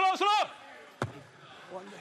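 A single sharp thud of a football being kicked, about a second in.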